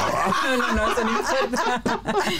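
Several women laughing and chuckling together, short broken bursts of laughter.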